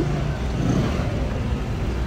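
Motorcycle engine running as a steady low drone.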